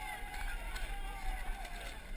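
Footsteps running through wet mud, with distant voices shouting.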